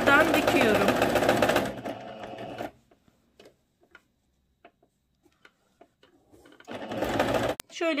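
Electric domestic sewing machine stitching steadily, running for about two seconds and then winding down to a stop. Near the end comes a brief loud burst that ends in a sharp click.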